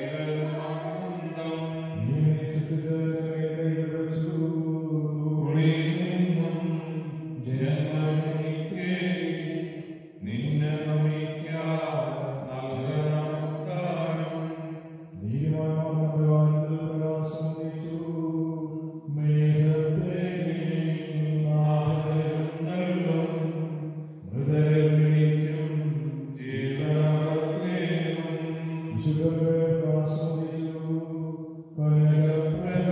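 A single man's voice chanting a liturgical funeral prayer on long, held notes, in phrases of a few seconds broken by short pauses for breath.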